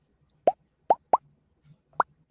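Four quick electronic plop sound effects, each a short rising bloop like a water drop, spaced unevenly across two seconds.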